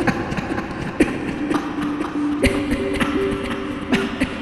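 Experimental electronic music from a VCV Rack software modular synthesizer: irregular sharp clicks and taps, with a few short held tones that step in pitch from about a second and a half in.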